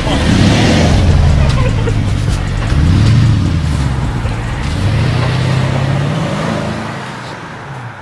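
A car engine pulling away, its pitch rising with each push of revs, then fading out near the end.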